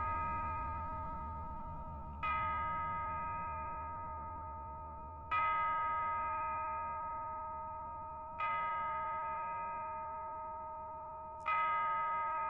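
A clock chime striking the hour: four strokes about three seconds apart, each ringing on and slowly fading.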